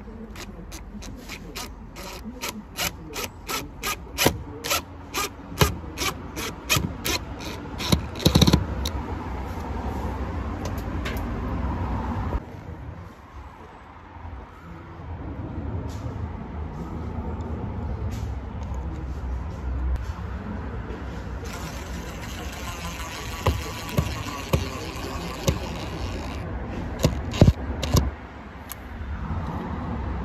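A screwdriver working a screw on a plastic electrical backbox: a run of sharp, evenly spaced clicks that come faster over the first eight seconds or so. Steady background noise follows, with a few sharp knocks near the end.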